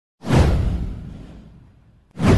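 A single whoosh sound effect: a sudden rush that swells in within a fraction of a second, with a deep low rumble under it, then fades away over about a second and a half.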